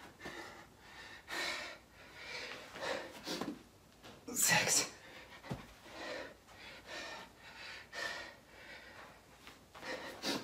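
A man breathing hard and panting mid-burpee, worn out from exertion, with loud noisy breaths about once a second; the strongest comes about four and a half seconds in. A dull thud just past halfway.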